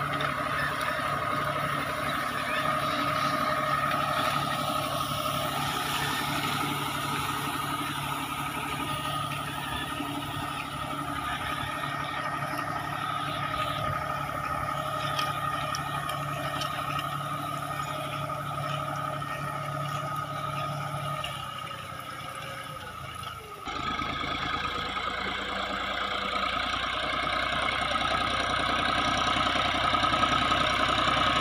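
A John Deere tractor's diesel engine running steadily under load as it pulls a seed drill, with a steady whine through it. The sound changes abruptly about three-quarters of the way through, then carries on.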